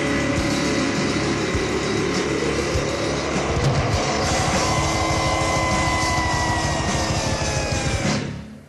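Loud, distorted death metal passage: dense distorted guitars and drums. Over the last few seconds a held note slowly bends down in pitch.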